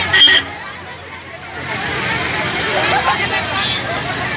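Slow, congested street traffic of motorbikes, scooters, auto-rickshaws and a bus running, with a crowd talking. A short horn beep sounds right at the start.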